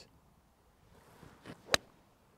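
A golf iron striking the ball off the turf: one sharp click near the end, from a swing made with the club face released.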